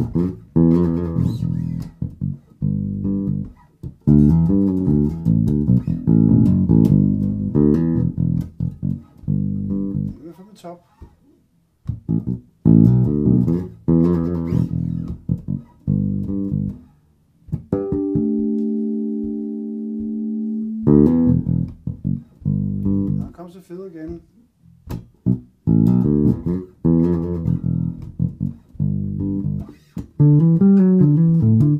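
Solo electric bass, a 1978 Music Man StingRay with nickel strings through a TC Electronic RH450 amp, playing a funky E-minor groove and fill in short phrases with brief pauses between them. A little past halfway, one note, a harmonic, is left ringing steadily for about three seconds before the groove resumes.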